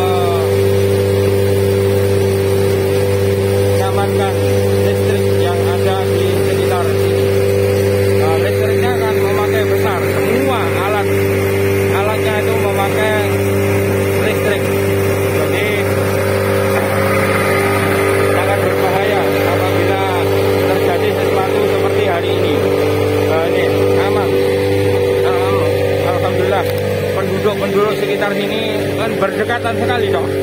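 Fire truck's diesel engine running steadily with an even hum while driving its pump to draw water from a canal through a suction hose. Voices in the background.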